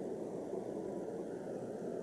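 Steady low-pitched background noise, with nothing standing out from it.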